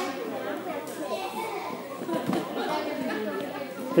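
Indistinct background chatter of several people talking at once, children's voices among it.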